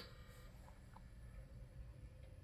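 Near silence: faint background hiss and hum after the music cuts off.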